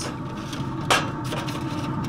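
A single sharp knock about a second in, as a plastic sauce bottle is set down on the grill's stainless side shelf, with a few fainter taps after it, over steady low outdoor background noise.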